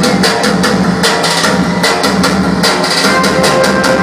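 Loud amplified live dance music from an electronic keyboard over a fast, steady drum beat, played through a PA speaker.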